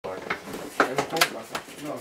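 Handling noise from a strapped-on piano accordion being settled into place close to the microphone: about five sharp knocks and some rustling in under two seconds.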